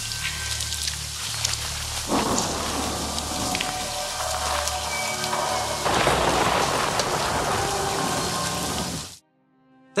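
Layered rain sound effects pouring steadily over a low music drone, the soundtrack of a rainy horror scene. The rain swells louder about two seconds in and again around six seconds, then everything cuts off suddenly near the end.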